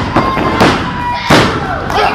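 Two sharp impacts of wrestlers' bodies slamming onto the wrestling ring mat, about half a second and just over a second in, with spectators shouting.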